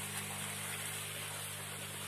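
A steady low machine hum with a faint hiss over it, unchanging throughout.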